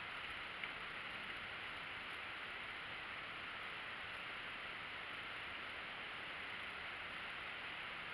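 Steady faint hiss of outdoor background noise with no distinct event, and a single faint tick about half a second in.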